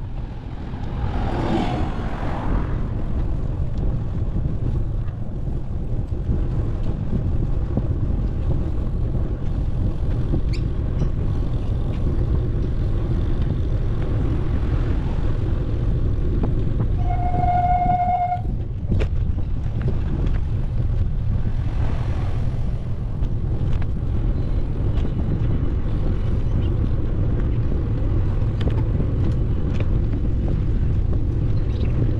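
Steady wind rumble on the microphone of a moving bicycle, with a vehicle passing about two seconds in and another about two-thirds of the way through. A little past the middle, a vehicle horn gives one steady toot lasting just over a second.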